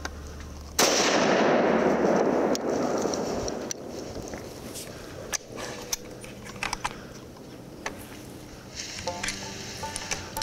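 A single hunting-rifle shot about a second in, loud, with its echo dying away over about three seconds.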